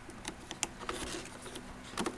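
Faint scattered clicks and rubbing as a plastic UPS battery pack is handled in its case while its power connector is being reattached.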